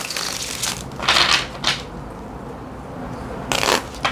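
Tarot deck being shuffled by hand: four short rustling bursts of cards sliding against each other, the last one near the end, with a quieter pause in the middle.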